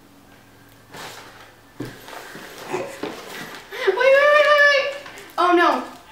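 Faint rustling and handling noises of wrapping paper and tape for a couple of seconds, then a loud, high, drawn-out vocal cry about four seconds in and a shorter one just before the end.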